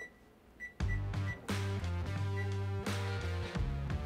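Several quick high electronic beeps from an oven's keypad as the oven is set, followed about a second in by background music with sustained notes, which is the loudest sound.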